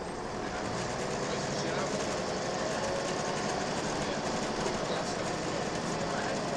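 Inside a Volvo B10BLE single-deck bus under way: its diesel engine running and steady road noise in the saloon, building slightly in the first second.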